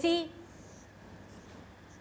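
Marker pen drawing on a whiteboard: a few faint scratchy strokes as graph axes are drawn.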